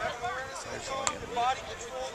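Background chatter of several voices around a football practice field, with one sharp smack about a second in.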